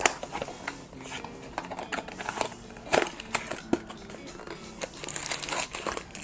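Small cardboard blind box being opened by hand, with scattered light taps and rustles of the flaps, then a clear plastic bag crinkling near the end as the item inside is pulled out.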